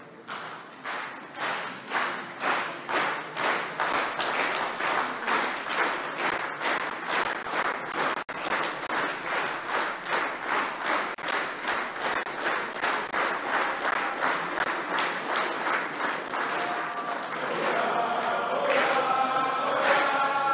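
Audience clapping in unison to a steady beat, about two to three claps a second. Near the end a crowd of voices starts singing over the clapping.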